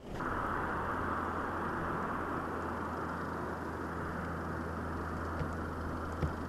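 Steady outdoor field noise with a low, even hum like a running engine, starting abruptly, with a faint click near the end.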